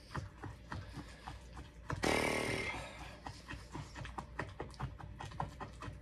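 Spoon stirring and scraping a thick paste in a bowl, with many small clicks and taps of the spoon against the bowl, and a louder rough rush of noise about two seconds in.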